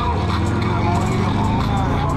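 Motor vehicle engines running steadily, with people's voices over them.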